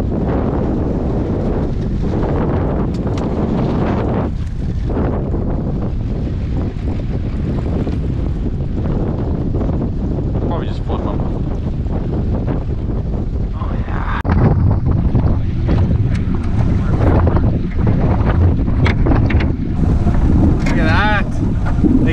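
Strong wind buffeting the camera microphone in a small boat on choppy water: a loud, steady rumble, a little louder in the second half. A brief voice near the end.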